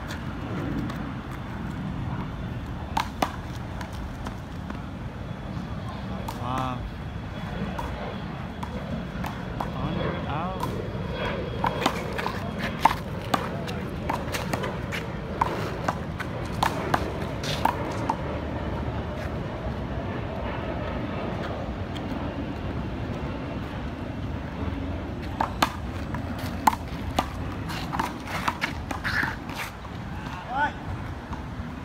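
Small rubber handball being struck by hand and smacking off a concrete wall and pavement during a one-wall handball rally: sharp, separate slaps, a few early on and then quick clusters in the middle and near the end.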